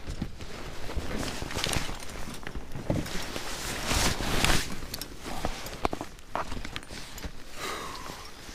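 Camera handling noise: irregular rustling with a few sharp clicks and knocks as the camera is moved about. The longest, loudest rustle comes about four seconds in.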